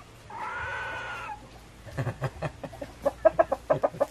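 A domestic animal's call, held for about a second near the start. It is followed in the second half by a quick run of short, sharp sounds, louder than the call.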